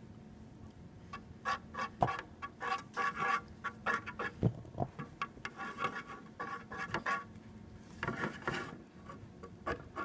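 A thin stirring stick scraping and tapping against the bottom of a container as slime mixture is stirred: a string of short, irregular scrapes and clicks starting about a second in, with a couple of sharper knocks.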